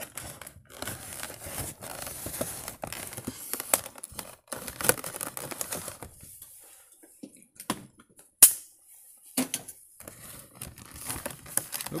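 A dull knife cutting through the stiff clear plastic blister of a diecast toy package, the plastic crackling and crinkling in quick irregular ticks. A quieter stretch in the middle is broken by one sharp click.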